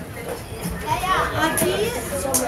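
Children's voices at play, calling and talking, mixed with the chatter of a seated crowd.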